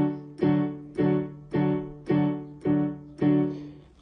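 Electronic keyboard in a piano voice: a D major full chord, played with both hands, struck repeatedly about twice a second, seven strikes, each fading before the next.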